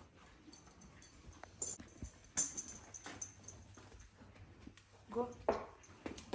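Saddle tack being handled and the girth worked on: a few light clicks and metallic clinks with soft rustling, the sharpest clink about two seconds in.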